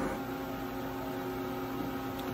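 Steady machine hum from a CNC vertical machining centre, several fixed tones held without change, with no cutting or axis movement heard.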